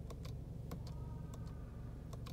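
Several faint, irregular clicks as the menu button on the stalk behind the steering wheel of a 2014 Buick Encore is pressed to cycle the instrument-cluster display. A low steady hum of the idling engine runs underneath.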